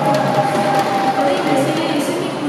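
Background music over the stage sound system, with an audience cheering.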